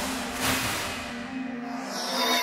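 Media Factory studio-logo sting: a held synth tone under a noisy, rushing swell that peaks about half a second in and then slowly fades.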